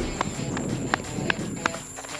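Footsteps of two people in slides and sandals walking briskly on a concrete road, about three sharp steps a second.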